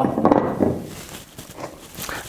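Kitchen handling sounds of small prep bowls: a bowl set down on a wooden tray and dry ingredients tipped into a stainless steel mixing bowl. Loudest at the start, then soft rustling and a few light knocks.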